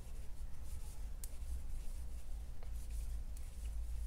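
Faint rubbing and scratching of yarn drawn over a crochet hook as double crochet stitches are worked, with a few light ticks, over a steady low hum.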